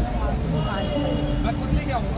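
Voices talking close by over a steady low rumble of road traffic.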